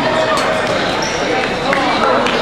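Rubber dodgeballs bouncing on a hardwood gym floor, several sharp knocks, over players' shouts and chatter echoing through the gym.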